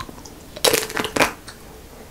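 Hard chocolate shell of an ice cream bar cracking as it is bitten: a crisp crack about halfway in, followed by a second one.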